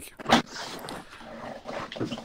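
A man laughing: one short loud burst, then breathy, wheezy laughter without much voice.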